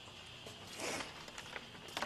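Rustling of paper and handling noise close to the podium microphone, in short bursts about a second in and again near the end.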